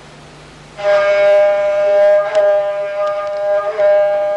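A gusle, the single-string bowed folk fiddle, starts playing about a second in. It holds a steady bowed note, with small steps in pitch, in a drone-like melody.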